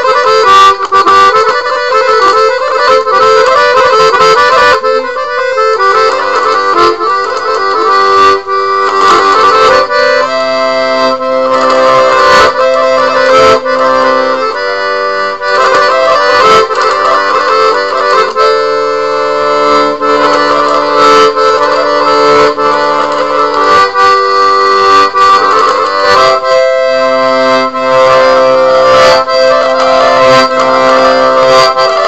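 Accordion playing a tune: quick runs of notes for the first few seconds, then held chords over bass notes, changing every second or two.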